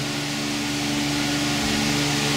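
Steady mechanical drone: a low, even hum with a hiss over it, with no clicks or knocks.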